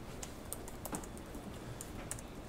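Light, irregular clicking like keys being typed on a keyboard, about a dozen small clicks over quiet room tone.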